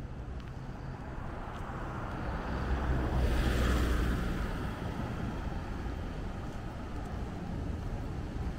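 A car passing close by on the road, its noise swelling to a peak about three to four seconds in and then fading, over a steady rumble of wind on the microphone.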